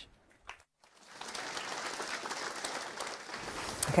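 Audience applauding, a dense patter of many hands clapping that starts about a second in after a moment of near silence.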